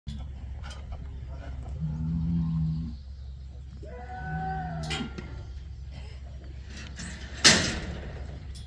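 Cattle mooing twice, two long low calls a couple of seconds apart, the second starting higher. Near the end a loud sharp bang cuts in and fades quickly.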